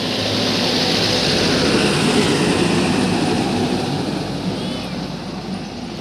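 A motor vehicle passing by, its noise swelling to a peak about two seconds in and then slowly fading, over a steady low hum.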